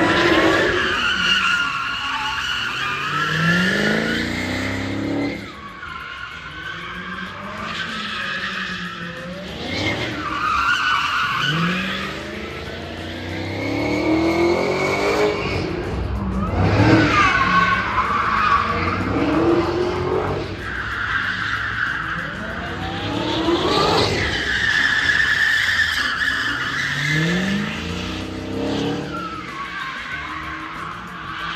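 A Dodge car drifting in circles: its tyres squeal continuously while the engine revs climb and drop again and again, every few seconds.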